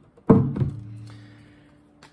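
Nylon-string classical guitar knocked as it is set down: a thump about a third of a second in, then its open strings ring on and fade away over the next second and a half.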